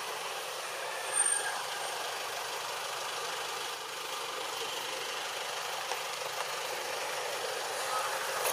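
Steady outdoor background noise, an even hiss, with a brief louder sound a little over a second in.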